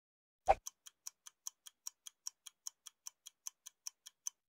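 Clock-ticking timer sound effect: a single louder click about half a second in, then even ticks about five a second, alternating louder and softer.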